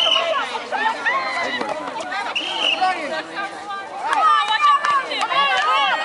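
Several women's and girls' voices talking and calling out at once, overlapping so that no single voice is clear: the chatter of netball players and spectators.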